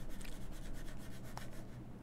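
A coin scraping the scratch-off coating off a paper lottery ticket: rapid repeated rubbing strokes that thin out and fade near the end.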